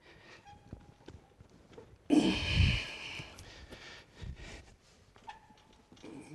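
Handling noise as a heavy swivel stool on a pointed foot is shifted and levelled by hand. One loud, rough rush comes about two seconds in and lasts about a second, with faint knocks and rustles before and after.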